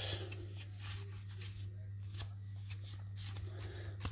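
A stack of 1987 Topps cardboard baseball cards being handled and thumbed through, the cards sliding and flicking against each other in a run of faint soft clicks, over a low steady hum.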